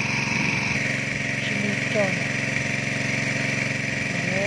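A small engine running steadily at idle, a constant low hum with a steady high hiss above it.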